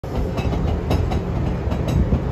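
Train carriage heard from inside while moving: a steady low rumble of wheels on the track, with several irregular sharp clicks and knocks.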